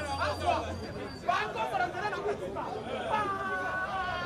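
Speech only: men talking animatedly, with one long drawn-out voice sound near the end.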